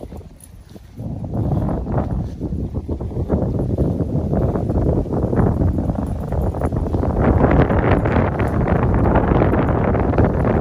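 Footsteps through grass and wind on the microphone, starting suddenly about a second in and growing louder.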